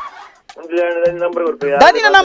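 A person's voice holding one long, drawn-out vowel at a steady pitch for about a second. It follows a brief breathy hiss, and ordinary speech starts again near the end.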